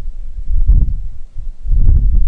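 Wind buffeting an open-air microphone: a loud, uneven low rumble that swells about half a second in and again near the end.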